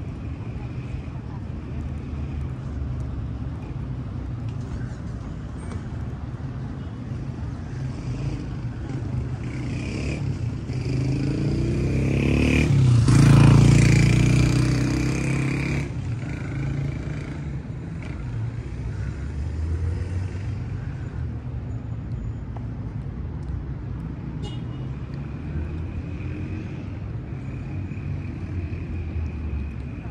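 Steady road-traffic rumble, with one motor vehicle passing that swells to its loudest about halfway through and then fades away.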